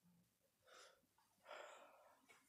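Near silence, with two faint breaths, the second and louder one near the end.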